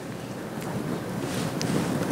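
Steady rushing noise, like wind, that slowly grows louder.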